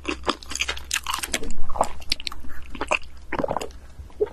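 Close-miked chewing and crunching of a bagel egg sandwich: a steady run of short bites and chews, loudest about a second and a half in.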